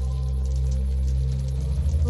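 Ambient background music: a steady, sustained low drone.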